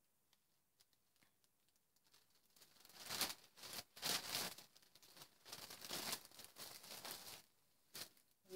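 Plastic bags and loose alpaca fibre being handled: irregular rustling and crinkling that starts a couple of seconds in and stops shortly before the end, after a near-silent start.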